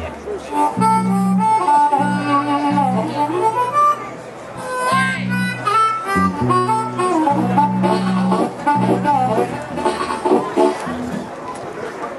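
Harmonica played through the stage PA during a sound check: a bluesy line whose notes bend and slide in pitch, over sustained low bass notes.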